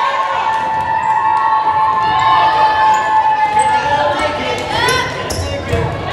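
Volleyball gym sounds: players' voices calling out with sharp knocks of a ball being hit or bounced on the hard floor. Near the end come short curved squeaks of sneakers on the hardwood court.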